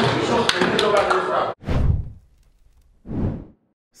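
Several men's voices talking and calling out together in a dressing room, with a few sharp knocks, cut off abruptly about a second and a half in. Two whooshing sweeps follow about a second and a half apart, the first the louder.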